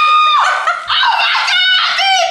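A high-pitched, held excited squeal that breaks off about half a second in, followed by more high, excited shrieking and laughing voices.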